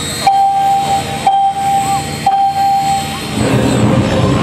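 An Align T-Rex 700 E electric RC helicopter lifting off, its rotor running steadily. Over it sound three long tones of the same pitch, each starting sharply about a second apart, opening the flight music.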